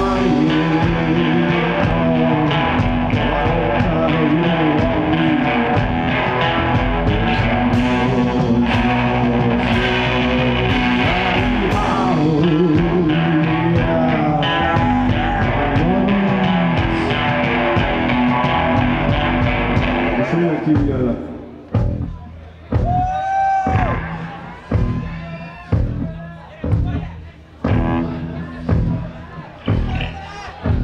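Live psychedelic rock band playing: a male lead vocal over electric guitar, drums and keyboards. About two-thirds of the way through, the full band drops away to a sparse section of separate hits about once a second, with the voice carrying on between them.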